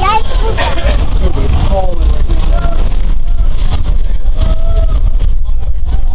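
Steady, loud rumble of a vintage BU gate subway car running on the rails, heard from inside the car.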